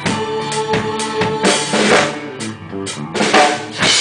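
Acoustic drum kit played with sticks, with bass drum, snare and cymbal strikes, along to a recorded song whose sustained notes carry under the drums. The strongest strikes come about a second and a half in and again near the end.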